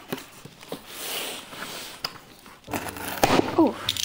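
Box cutter slicing along the packing tape on a cardboard box, a soft hiss with small clicks, then the cardboard flaps being pulled open with louder rustling and scraping near the end.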